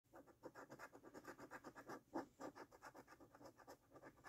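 A coin scraping the scratch-off coating from a paper lottery scratch card in quick, quiet back-and-forth strokes, about six a second, with one harder stroke a little after two seconds in.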